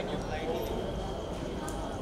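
Background chatter of a crowd of voices, with a few short sharp clicks.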